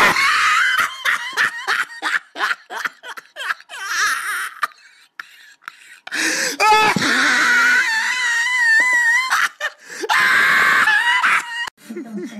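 A person laughing hysterically in rapid bursts, breaking into long, high, wavering wailing cries partway through.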